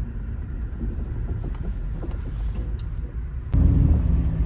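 Car road noise heard from inside the cabin while driving: a steady low rumble of tyres and engine, with a couple of faint clicks. About three and a half seconds in, it jumps abruptly to a louder, deeper rumble with a steady hum.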